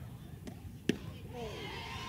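A softball popping into the catcher's mitt once, a single sharp smack about a second in, over faint ballpark ambience.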